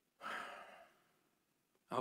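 A man's short audible breath, under a second long and fading out, with the word "Now" starting near the end.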